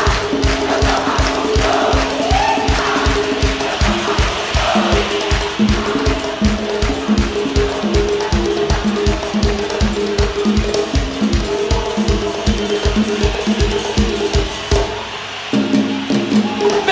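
Live axé band music with no lead vocal: a fast, steady drum beat under a melodic instrumental line, with a crowd faintly audible. The drums drop out briefly near the end, then come back in.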